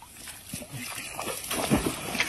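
Water splashing and sloshing at the edge of a pond, with a heavier splash near the end.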